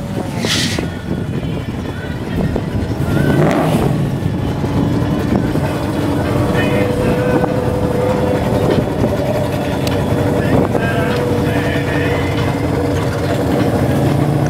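Plymouth Barracuda drag car's engine running at the strip, with two brief louder bursts in the first few seconds, then settling into a steady idle as the car rolls in the lane.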